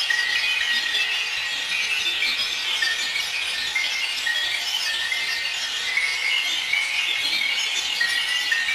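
Experimental noise music: a dense, steady, high-pitched hiss and scrape with almost no low end, over which a thin tone steps up and down in pitch.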